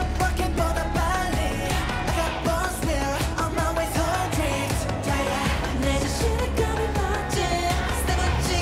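K-pop dance track with a male vocal melody sung over heavy bass and a steady beat.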